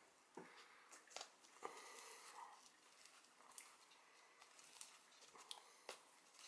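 Near silence, with a few faint scattered ticks and soft rustles of fingers digging into potting soil in a plastic cup.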